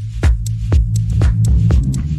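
Electronic background music: a sustained low bass note under a steady drum beat of about four hits a second.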